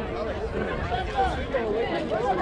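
Indistinct chatter of several voices overlapping, with no clear words.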